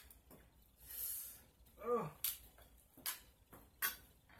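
Wooden clothespins clacking as they are handled and clipped onto skin: several sharp, separate clicks, with a pained "Oh!" about two seconds in.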